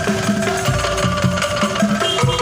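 Angklung ensemble playing a song: shaken bamboo angklung tubes carry the melody in held, rattling notes over a steady low bamboo percussion beat of about four strokes a second.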